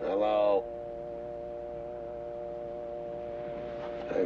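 Telephone dial tone humming steadily from the handset held to the ear, the line having gone dead. A short vocal sound from a man is heard over it at the very start.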